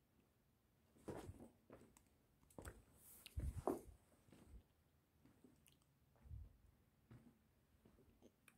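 Mostly near silence, broken by faint scuffs and soft knocks of someone moving about with a handheld camera: a cluster about a second in, the loudest between three and four seconds, and another near six seconds.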